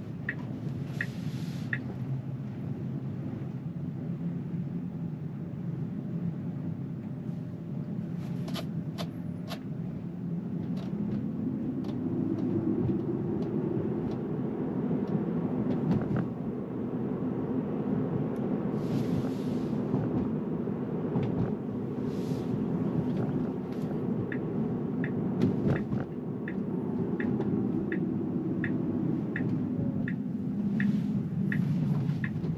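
Tyre and road noise inside a Tesla's cabin while it drives, growing louder from about midway as the car picks up speed. A turn-signal indicator ticks about twice a second at the start and again over the last several seconds.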